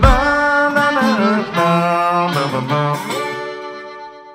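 End of a live band song: guitar notes over drums, opening with a sharp drum hit, then a last chord ringing and fading away near the end.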